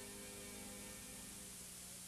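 Faint steady mains hum with light hiss from an off-air Betamax tape recording, with no programme sound over it.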